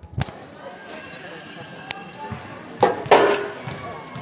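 Handling noise from a phone being carried and brushed against coats: knocks and rustles, loudest a little before the end, over faint background voices in a gym.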